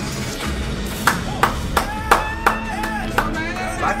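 Rhythmic hand clapping, about three claps a second, starting about a second in, over background music.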